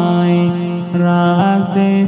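Male voice singing a Bengali Islamic gajal in long, held, chant-like notes that step from one pitch to the next, with two short breaks, about a second in and again near the end.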